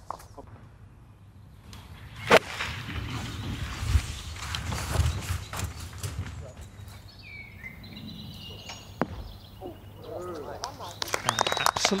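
A golf club striking the ball on a 182-yard approach shot: one sharp crack about two seconds in, followed by faint outdoor background.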